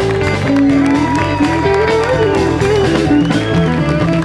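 Live blues band playing an instrumental vamp, an electric guitar taking a lead line with bent notes over bass and drums.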